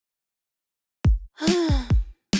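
A cartoon child's sigh, falling in pitch, coming in suddenly about a second in after silence, with deep thuds beneath it.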